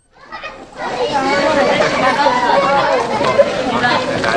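Many children's voices chattering and calling out at once, fading up from silence within the first second.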